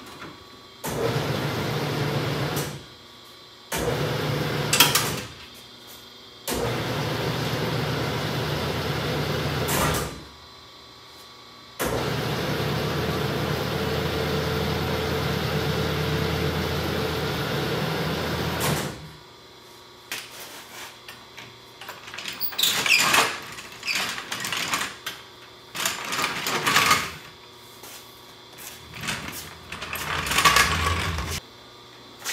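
Two-post car lift's electric hydraulic pump motor running in four bursts, the last and longest about seven seconds, raising a VW Beetle clear of its dropped engine. In the second half, irregular clunks and rattles as the floor jack carrying the engine cradle is rolled out across the concrete floor.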